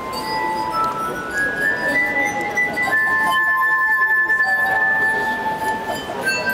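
Glass harp: water-tuned stemmed glasses sounded by rubbing wet fingertips around their rims, playing a slow melody of pure, sustained, overlapping notes. The tune climbs in steps, then one high note is held for about three seconds near the end.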